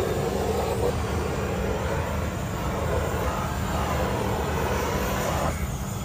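Paint sprayer hissing as yellow paint is sprayed onto a stadium seat, over a steady low drone; the hiss cuts off suddenly about five and a half seconds in.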